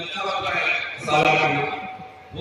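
A man's raised voice speaking into microphones and carried by a public-address system.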